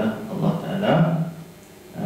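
Only speech: a man's lecturing voice, dropping to a lull about a second and a half in.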